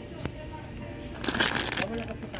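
A brief burst of rapid rustling clicks, a little over a second in, over a background murmur of voices and music.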